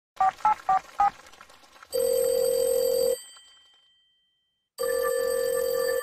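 Telephone call being placed: four quick two-pitch keypad dialing beeps, then the steady ringback tone of the line ringing, heard twice with a silent gap between.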